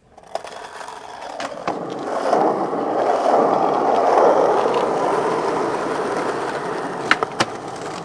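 Skateboard wheels rolling over rough pavement, the roll swelling louder over the first few seconds and then easing off, followed by two sharp clacks of the board a fraction of a second apart about seven seconds in.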